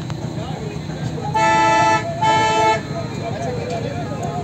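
A vehicle horn honked twice: two steady blasts of about half a second each, a quarter-second apart.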